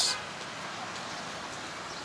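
Steady background hiss of distant street traffic, even and without distinct events.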